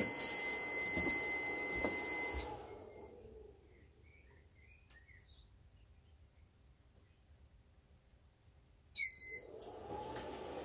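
A power inverter's overload alarm sounds as a steady high-pitched electronic tone over the whir of its cooling fan while it is loaded by an arc welder. About two and a half seconds in, the tone cuts off and the whir dies away as the inverter shuts down, leaving near silence with a faint click and some faint bird chirps. Near the end a short beep and the whir return as it powers back up.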